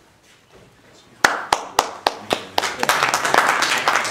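Audience clapping: a few separate sharp claps begin about a second in, then quickly build into steady applause.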